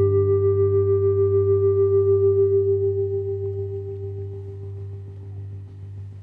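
Final chord of two electric guitars ringing out and slowly fading, with a slight regular waver in its level.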